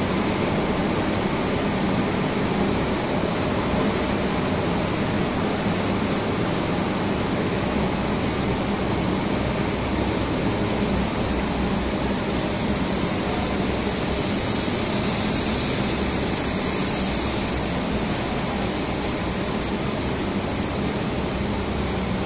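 Steady, even noise of a running electro-galvanizing wire production line, with a low steady hum beneath it and no distinct knocks or changes.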